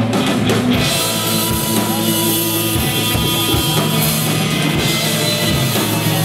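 Live rock band playing loud, with electric guitars over a drum kit keeping a steady kick-drum beat.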